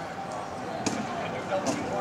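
Two sharp knocks from wheelchair rugby play on an indoor court, about one second and nearly two seconds in, over a murmur of distant voices echoing in a large hall.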